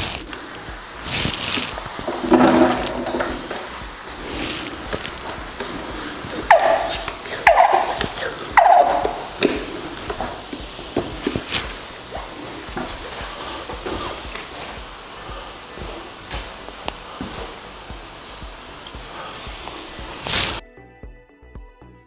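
Hand-pump pressure sprayer misting rinseless-wash pre-wash onto a car's paint: a steady spray hiss that cuts off suddenly near the end. About a third of the way in come three short falling squeaks.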